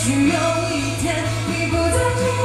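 A woman singing a pop song live into a microphone over amplified backing music with a steady bass line and light cymbal ticks.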